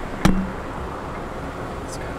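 Car driving, its road and engine noise heard from inside the cabin as a steady rumble, with a short click about a quarter second in.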